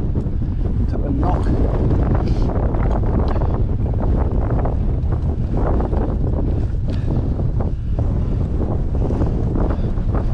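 Strong wind buffeting the microphone, a loud steady rumble, over scattered rattles and knocks from a Cannondale mountain bike riding over a rough stony track and flagstones.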